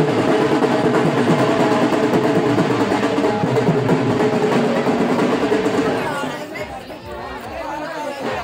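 Procession music with fast, dense drumming and a held melodic tone over it, loud and steady, then falling away about six seconds in, leaving crowd voices.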